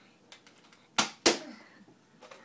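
Two sharp snaps about a quarter second apart, about a second in, from a toy Nerf blaster being fired.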